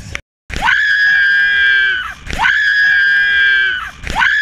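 A person's long, high-pitched scream, held about a second and a half after a brief dead silence. The same scream repeats identically twice more, looped.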